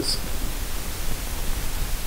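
Steady hiss with a low hum underneath: the room tone and microphone noise of a lecture hall's sound pickup, with no other sound standing out.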